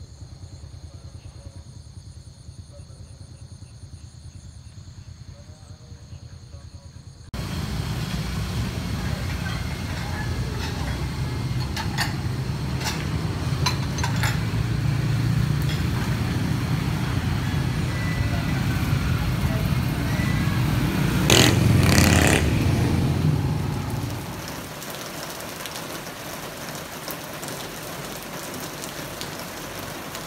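Insects calling in steady, high-pitched tones over a quiet paddy field. About seven seconds in, street traffic takes over abruptly: motor scooters and cars run past, and a machine passes close and loud about three-quarters of the way through. It then settles after about 24 s into a quieter steady hiss, likely heavy rain on paving.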